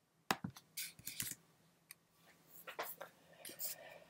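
Faint, scattered clicks and soft rustles of a computer keyboard and mouse or trackpad in use, with a few soft breaths close to the microphone.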